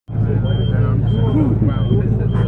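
Small engine of a Japanese kei fire truck idling with a steady low hum, while a short high beep repeats about every half second.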